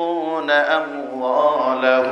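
A man chanting in a sung, melodic style, holding long notes whose pitch steps up and down between them.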